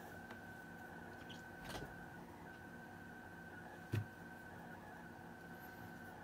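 Quiet room tone with a faint steady high whine. Light handling noise from working the tzitzit strings by hand on a leather desk pad: a soft tick just under 2 s in and a short soft knock about 4 s in.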